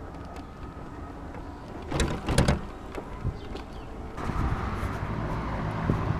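Small ride-on vehicle rolling along a road, with a steady rumble and a thin motor-like whine. A short clatter comes about two seconds in, and the rolling noise grows louder from about four seconds.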